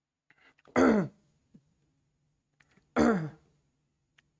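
A man clearing his throat twice, about a second in and again about three seconds in. Each is short and falls in pitch.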